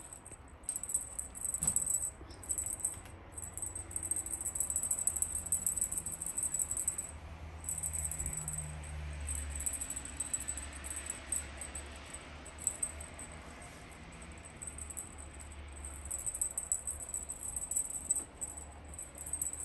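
Wand toy rattling and jingling in quick continuous shakes as a cat bites and tugs at it, stopping briefly a few times.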